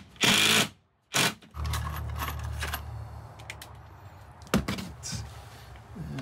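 Ryobi cordless impact driver driving a screw into a plywood panel: a couple of short scuffing bursts, then the driver runs steadily for about three seconds and stops, followed by a sharp knock.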